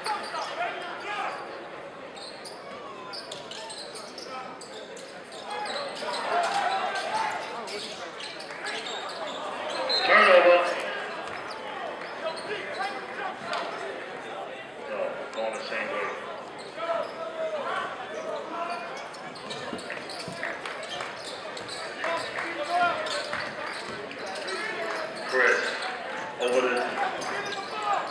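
Basketball game in a crowded gym: a ball dribbling and bouncing on the hardwood floor under the chatter and calls of the crowd, with one loud voice rising above it about ten seconds in.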